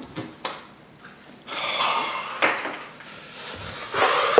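Red plastic cups being handled on a felt pool table: a few light knocks and plastic clatter, the loudest about two and a half seconds in, with a short scraping sound just before it.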